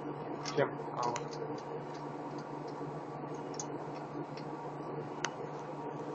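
Metal tweezers tapping on a copper lump, a few faint ticks and one sharper click near the end, over a steady low electrical hum from the furnace equipment.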